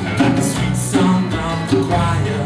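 Live acoustic band playing a song: strummed acoustic guitars, electric bass and a djembe keeping a steady beat, with a man singing.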